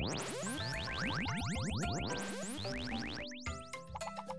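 Cartoon sound effects for bouncing balls: a rapid, overlapping run of rising whistle-like boings over light background music, ending about three seconds in and leaving the music alone.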